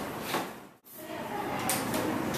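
The sound cuts out briefly under a second in, then a short puff of aerosol hairspray hisses near the end.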